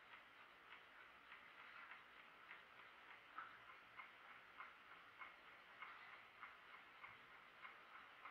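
Soviet Jantar mechanical chess clock in a Bakelite case ticking faintly and steadily, about two to three ticks a second.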